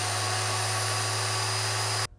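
Older 5.7-amp Harbor Freight dual-action polisher running unloaded with its six-inch pad spinning free in the air, switched on and locked on with its basic slide switch. A steady motor hum with a thin, high whine.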